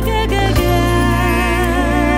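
A woman's voice singing a long held note with vibrato over a steady ballad backing with sustained bass and chords. The note starts about half a second in.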